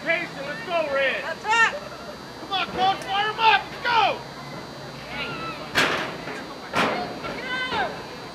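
High-pitched shouts and calls from players and spectators at a girls' soccer match, short cries one after another. Two sharp knocks sound about six and seven seconds in.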